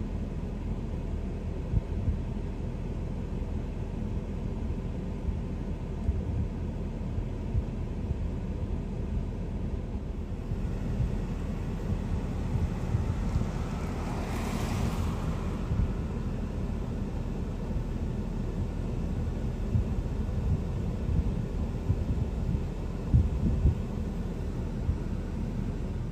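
Steady low rumble of wind on the microphone and idling vehicles, heard from a stopped truck, with a few sharp thumps. A brief swell of hiss comes about halfway through.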